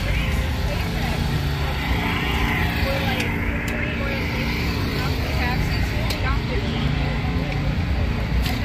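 Car engines running nearby: a steady low rumble, with faint voices under it.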